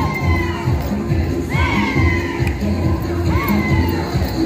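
Dance-fitness music with a steady, repeating beat, overlaid three times by loud whooping shouts that rise and fall in pitch.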